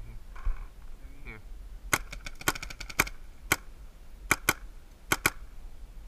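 Paintball markers firing: a fast string of about a dozen shots starting about two seconds in, then a single shot and two quick pairs of shots.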